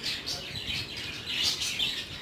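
Small birds chirping, a run of high-pitched calls that is strongest in the second half.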